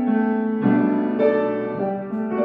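Upright acoustic piano being played: a slow melody over sustained chords, with new notes struck about every half second and left to ring.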